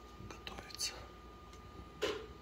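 A metal ladle stirring a pot of thick, creamy soup: a few faint clinks and one short hissing swish just under a second in.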